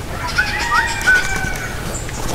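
Birds calling in a few short whistled notes, some sliding in pitch, over a steady low rumble of outdoor noise.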